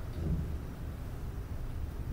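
A steady low rumble of room or recording background noise, with no clear speech.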